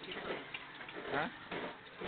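Indistinct voices with a few light clicks.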